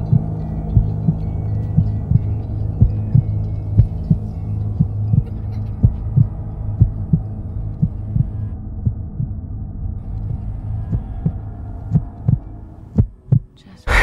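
Film soundtrack: a steady low drone with a regular thumping pulse like a heartbeat, about three beats a second. Near the end the drone fades, leaving a few separate thumps.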